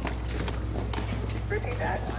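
Footsteps on a concrete pool deck at a walking pace, sneakers striking the hard surface, over a steady low hum.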